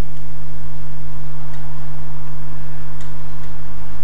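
A steady low electrical hum, with a few faint clicks about one and a half seconds apart.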